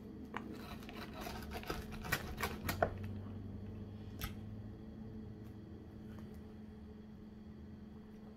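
Pizza wheel cutter rolling through a crisp baked pizza crust: a run of crunching crackles over the first three seconds, then a single click about four seconds in. A faint steady hum runs underneath.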